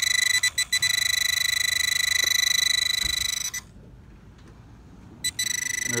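Metal detecting pinpointer giving a continuous high-pitched buzzing alert as it sits over a metal target in the hole. It cuts out twice briefly soon after the start, falls silent for about a second and a half past the middle, then buzzes again near the end as the probe moves on and off the target.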